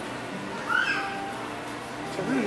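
A single brief high-pitched cry, rising then falling, a little under a second in, heard over a steady background hum.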